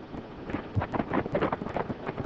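Horses' hooves clopping in an irregular run of knocks, several a second, over the steady hiss of an old film soundtrack.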